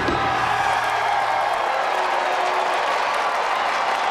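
A large crowd cheering and applauding, loud and steady, with music underneath.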